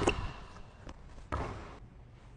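Basketball bouncing on a gym's hardwood floor with the echo of the hall: the ringing tail of a hard bounce at the start, then a single dull thud about a second and a half in.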